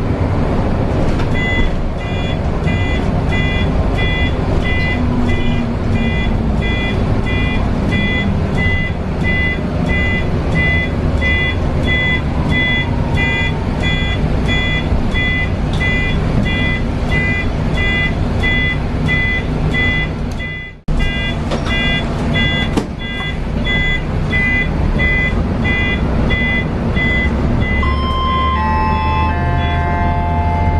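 Mercedes-Benz O405NH bus driving, its engine and drivetrain heard from the driver's cab, with an electronic beep repeating about twice a second for most of the time. The sound cuts out for a moment about two-thirds of the way through, and near the end a few falling tones sound.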